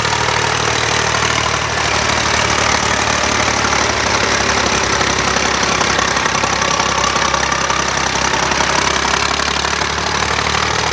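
Tractor engine running steadily at low speed while towing a loaded wooden trailer.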